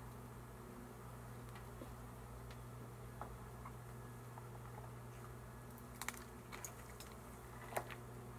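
Faint, steady hum of a honeybee swarm buzzing around the comb on the branch, with a few sharp clicks about six seconds in and again near the end.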